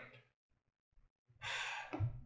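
Near silence, then a man's audible intake of breath about a second and a half in.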